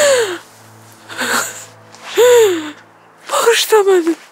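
A woman sobbing: three falling, wailing cries with sharp gasping breaths between them, over soft sustained background music.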